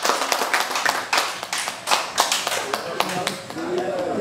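A small group clapping with voices mixed in. The clapping thins out about three seconds in as a man's voice comes in.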